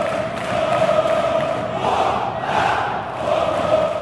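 Large crowd chanting in unison: a steady, sustained mass of voices holding a sung note, swelling slightly in the middle.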